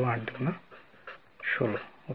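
Speech only: a voice talking in two short phrases with a brief pause between them.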